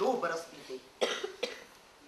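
A person coughing: a sharp cough about a second in, followed by a shorter second one, after the tail of a spoken phrase.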